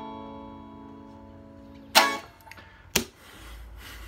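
The last strummed chord of a semi-hollow electric guitar ringing out and slowly fading, then stopped short about two seconds in by a sharp thump. A second, smaller knock follows about a second later, and a low hum comes in near the end.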